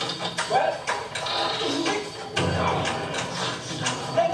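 A drama soundtrack playing from a television in a room: a music score mixed with brief voice calls and repeated short knocks.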